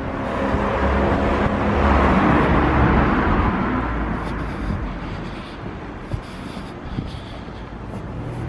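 A motor vehicle passing by on the street: engine rumble and tyre noise swell to a peak about two seconds in, then fade away over the next few seconds.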